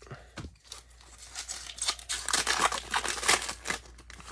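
Foil trading-card pack wrapper being torn open by hand: a quiet rustle, then a dense run of crinkling and tearing from about a second and a half in.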